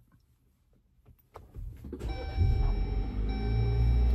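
Jeep Wrangler engine cold-started, heard from inside the cabin. After a click, the engine turns over and catches about two seconds in, then settles into a low, steady idle that slowly grows louder. A steady high tone sounds above it once the engine is running.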